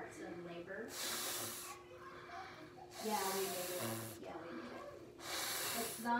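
A child blowing hard through a wet, soapy cloth held to his mouth: three long rushes of breath, each about a second, forcing air through the soaked fabric and pushing foam out of its far side.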